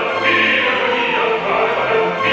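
Male operatic singing with orchestral accompaniment in a live opera performance.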